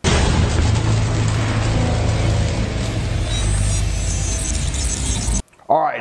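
Loud intro stinger for a logo animation: music with heavy, booming sound effects, starting abruptly and cutting off suddenly about five and a half seconds in.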